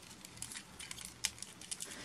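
Faint, scattered clicks and light rattling of a plastic Transformers Bumblebee action figure's parts and joints being moved and folded by hand during its transformation.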